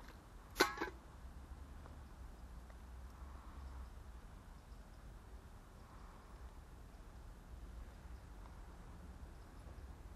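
A single short, wavering animal call a little over half a second in, over a low steady rumble.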